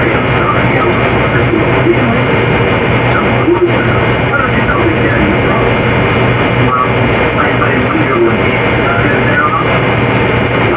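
Loud, dense jumble of overlapping voices and music over a steady low hum, with no break.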